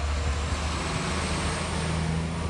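A flatbed truck's engine running close by with road noise: a steady low rumble, joined about a second in by a steadier hum.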